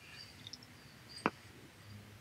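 Quiet room tone with a single sharp click a little over a second in, and a fainter tick before it.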